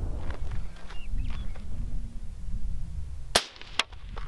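A single suppressed rifle shot from a .224 Valkyrie AR-style rifle (JP SCR-11) with an AMTAC Mantis-E .30-calibre suppressor, about three and a half seconds in, measured at about 132.5 dB peak at the shooter's ear. A fainter crack follows about half a second later, over a low steady rumble.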